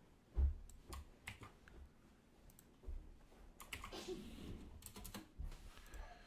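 Scattered faint computer keyboard and mouse clicks, the loudest about half a second in with a soft thump.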